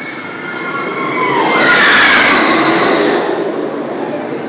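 Roller coaster train running along the track, a rushing rumble with high squealing tones that swells to a peak about two seconds in and then fades.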